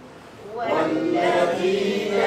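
Melodic chanted recitation of the Quran in Arabic. A brief pause at the start, then the chanting resumes about half a second in.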